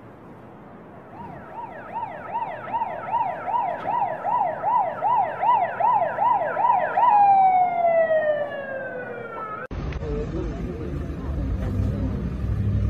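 Emergency vehicle siren yelping fast, about three rising-and-falling sweeps a second, then winding down in one long falling tone. It cuts off suddenly near the end, giving way to a low rumble of street noise.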